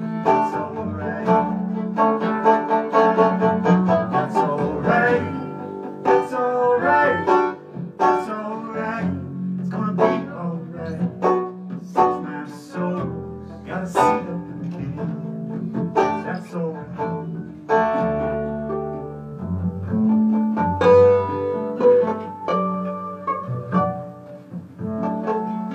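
Acoustic string band playing an instrumental passage: a fiddle bowing over a picked banjo, a strummed acoustic guitar and a plucked upright bass.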